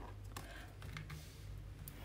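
A few faint clicks and light taps of oracle cards being handled in the hands, over a low steady hum.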